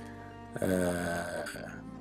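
A man's drawn-out hesitation sound, a held 'ehh', starting about half a second in and lasting about a second, over soft background music with sustained tones.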